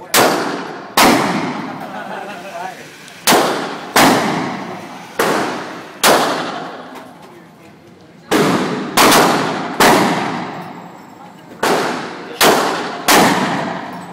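About a dozen gunshots fired one at a time at uneven spacing, some in quick pairs or threes, each loud crack trailing off in the long echo of an enclosed indoor range.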